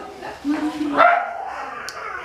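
A woman's closed-mouth "mmm" of enjoyment through a mouthful of food: a held, level hum, then a higher, rising "mm!" about a second in that fades away.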